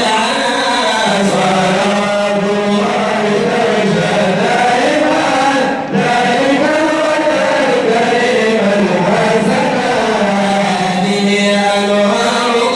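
Men chanting madih nabawi, an Islamic praise song for the Prophet, into a microphone, in long held notes that rise and fall. The singing breaks off briefly about six seconds in.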